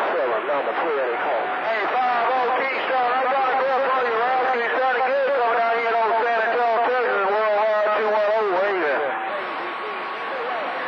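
CB radio receiving skip on channel 28: several distant voices overlap through the radio's narrow-band speaker, garbled and unintelligible. The jumble thins out near the end.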